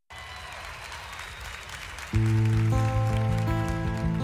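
Live concert recording: faint audience noise in a large hall, then about two seconds in the song's instrumental intro comes in louder, a held low note with higher sustained notes joining one after another.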